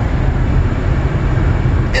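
Steady low rumble of a van driving at highway speed, engine and tyre noise heard from inside the cabin.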